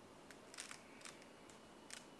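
Near silence broken by a handful of faint short clicks, the loudest about half a second in and near the end.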